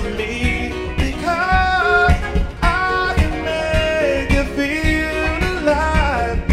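A man singing live over his own acoustic guitar, strummed and struck on the body for a percussive beat. He holds and bends long notes in the vocal line.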